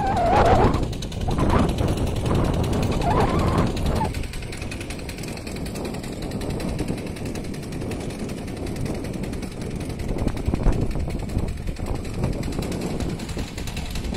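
Power weeder's small engine running, a steady, rapid beat of firing pulses, louder for the first few seconds.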